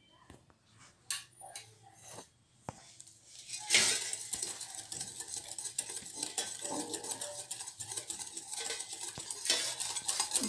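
A spoon clinks a few times against a glass bowl as curd is added. About four seconds in, a wire whisk starts beating the batter against the glass, a fast, steady run of scraping and clinking.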